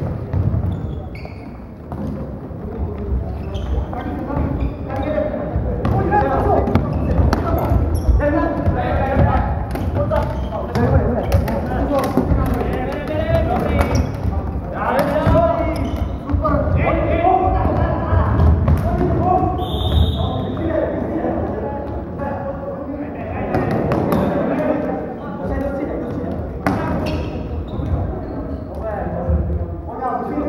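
Floorball players shouting and calling to each other in a large echoing sports hall, over frequent sharp knocks of sticks on the plastic ball and footfalls on the wooden court.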